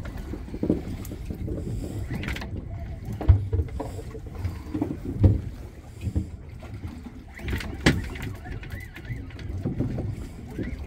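Steady low rumble of a small boat at sea, with wind on the microphone and a few sharp knocks.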